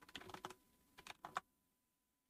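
Typing on a computer keyboard: a quick run of keystrokes, then a second short run about a second in.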